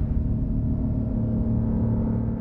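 Logo sting sound effect: a low, gong-like ringing tone left after the impact hits, held steady.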